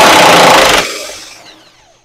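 Impact wrench on a long extension hammering at a car's subframe bolt to loosen it. A very loud burst that stops a little under a second in, then fades away as the tool winds down.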